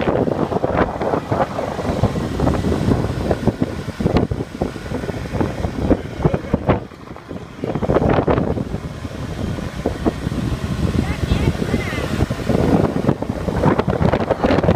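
Wind buffeting the microphone over road and engine noise from riding in traffic, with a short lull about seven seconds in.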